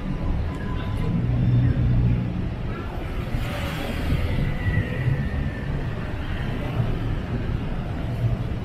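Busy night-street ambience: scattered voices of passers-by over a steady low rumble, with a brief rise of hiss about three to five seconds in.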